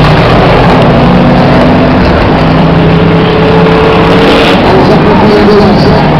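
Race car engines running, one holding a steady note through the middle, under a loud, constant rushing noise.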